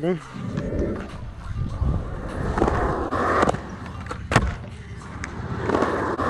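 Skateboard wheels rolling over concrete with a continuous low rumble that swells twice, and one sharp clack of the board about four seconds in.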